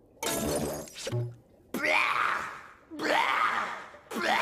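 A cartoon character's voice coughing and hacking in three harsh fits, each under a second long, with a short low grunt between the first two.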